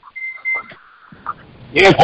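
Electronic beep on a telephone conference line: a high tone in two short pieces, back to back, about half a second in all. A man answers 'Yes' loudly near the end.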